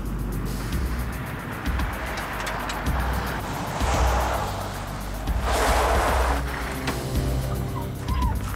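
Background music under vehicles driving in, with a police car passing on gravel. Two louder swells of engine and tyre noise come about four and six seconds in.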